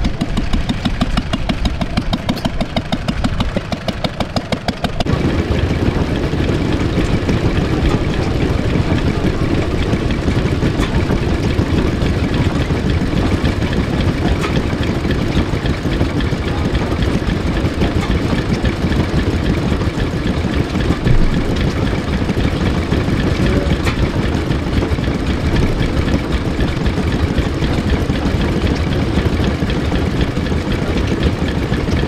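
Vintage stationary engines running, at first with a regular, even beat of firing strokes. About five seconds in the sound changes abruptly to a denser, steady engine running, from a stationary engine driving a water pump.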